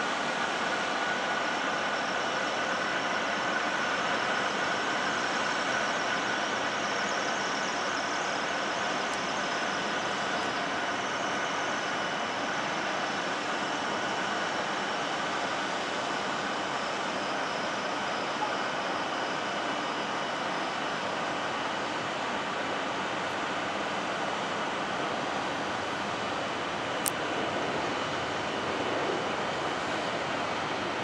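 Airbus A330 airliner running during pushback: a steady rushing noise with a faint, steady high whine over it. A single brief click sounds near the end.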